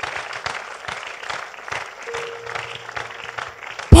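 Church congregation applauding, a dense run of clapping, with a single held musical note coming in about halfway. A man's loud shout cuts in at the very end.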